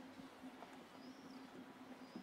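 Near silence in a quiet street: a faint steady low hum, with one faint, short, high bird chirp about a second in.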